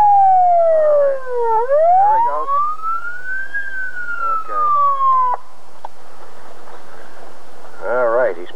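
Police patrol car siren wailing in slow sweeps: the pitch falls, rises again for about two seconds, then starts to fall once more. It cuts off abruptly about five seconds in.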